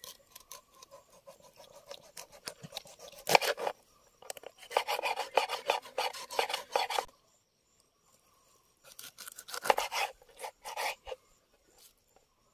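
A knife sawing through a whole catla fish on a wooden cutting board, rasping in runs of quick back-and-forth strokes with pauses between, and one sharp knock a little over three seconds in.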